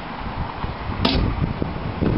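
A fiberglass storage hatch under a boat's helm console being shut, with one sharp click about a second in, followed by low wind rumble on the microphone.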